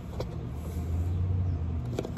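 A low rumble, swelling through the middle, with a couple of light clicks from fingers working the plastic end cap of a cardboard rod tube.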